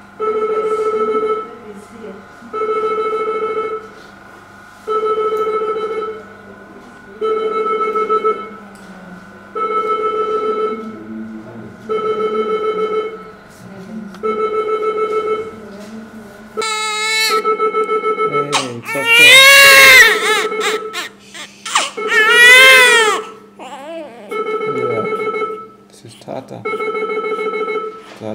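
A newborn baby crying, a few loud rising-and-falling wails about two-thirds of the way in. Under them an electronic alarm beeps a steady buzzing tone, about a second and a half on and a second off, repeating.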